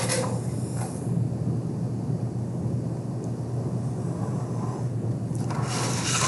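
A steel ruler slides across a sheet of drafting paper, with a short rub at the start and a louder, longer scrape near the end as it is pushed up the sheet. A steady low hum sits underneath.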